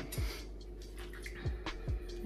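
Water splashing and dripping as a hand fishes a stopper out of a bowl of sanitizer solution, over background music with a low, recurring beat.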